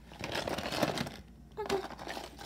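Toy packaging of cardboard and plastic rustling and crackling, with small toy pieces clicking, as it is handled for about a second. The word "okay" is spoken near the end.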